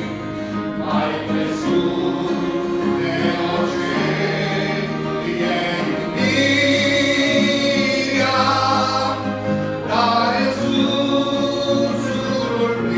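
A man singing a gospel hymn into a microphone over sustained instrumental accompaniment, in long held notes.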